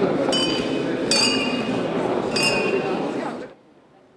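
Wine glasses clinking in a toast: three clear ringing clinks over crowd chatter, and the sound cuts off suddenly near the end.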